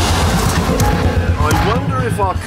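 Audi RS4's V8 engine running as the car is driven, under background music; a voice comes in near the end.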